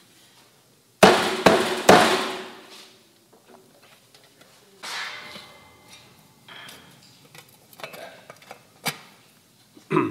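Stainless steel racing muffler being pulled apart by hand. About a second in comes a loud metallic clatter of several quick knocks that ring on briefly, followed by quieter scrapes and knocks of the metal parts.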